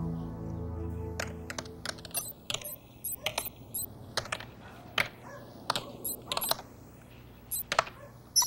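Typing on a computer keyboard: sharp clicking keystrokes in short irregular bursts. A sustained music chord fades out over the first couple of seconds.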